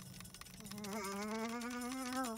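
Electronic robot sound effect: a buzzing tone that starts about half a second in and wavers slightly in pitch, with faint clicks running through it.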